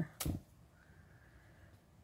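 A brief sharp rip of sheet fabric being torn by hand from a small snipped starter cut, followed by quiet handling of the frayed strip.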